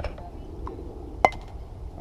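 A bat striking a baseball off a tee once, about a second in: a single sharp crack with a short metallic ring. A few fainter clicks and steady outdoor background noise sit around it.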